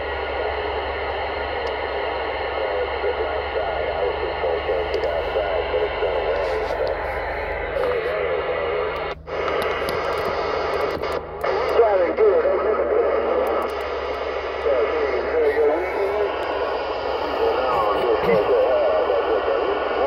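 CB radio speaker playing received skip: a hiss of band noise with faint, warbling, garbled voices from distant stations. The audio drops out briefly twice near the middle as the radio is switched between sideband and AM and across channels.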